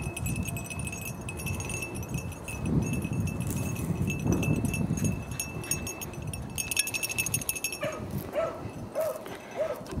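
A hunting dog barking in a run of about five short yelps, roughly half a second apart, in the last two seconds, giving voice as it trails rabbit scent. Before that, low rustling of movement through snowy brush.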